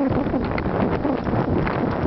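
Wind rushing over the microphone of a camera riding on a moving mountain bike, with rapid clicks and rattles from the bike jolting over a rough dirt singletrack.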